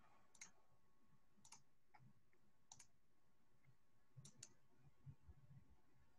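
Near silence, broken by a handful of faint, short, scattered clicks of computer input.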